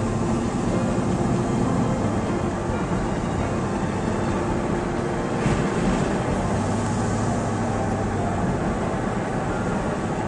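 Car driving on a paved road, heard from inside the cabin: a steady drone of engine and tyre noise.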